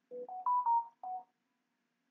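A short electronic notification jingle of about five quick tones, stepping up in pitch and then back down, lasting about a second.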